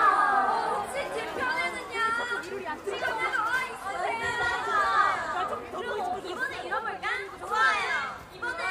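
Several voices talking and calling out over one another, with no music playing.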